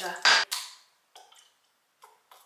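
A plastic lime-juice squeeze bottle is set down on a kitchen counter with a sharp knock and a brief ring. A few faint small clicks follow as a syrup bottle and its cap are handled.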